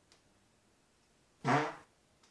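A single short fart-like noise, about half a second long, a little past the middle.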